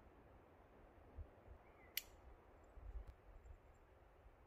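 Near silence with a faint low rumble and a few soft bumps. A single sharp click comes about halfway through, and a fainter tick about a second later.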